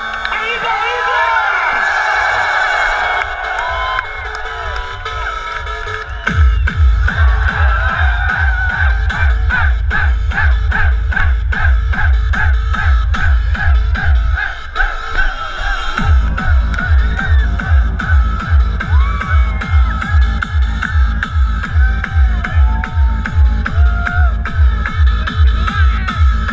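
Hardstyle dance music over a festival sound system, with the crowd shouting and cheering. A heavy four-on-the-floor kick drum comes in about six seconds in, at about two and a half beats a second. It drops out briefly just before the middle and then slams back in.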